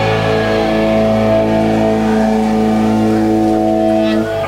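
Amplified electric guitars and bass holding one chord, ringing out as a loud, steady drone with no drums after a full-band hit. This is typical of the sustained last chord at the end of a rock song.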